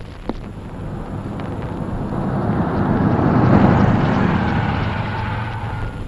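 A motor vehicle driving up, its engine and road noise swelling to a peak about three and a half seconds in, then easing off.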